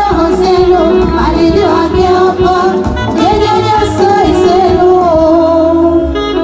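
Modern taarab band playing live, with women's voices singing over the band.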